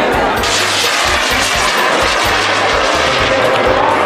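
A bang fai, a homemade bamboo-style festival rocket, firing from its launch tower with a loud rushing hiss that starts about half a second in and lasts about three seconds. Festival music with a steady bass beat plays underneath.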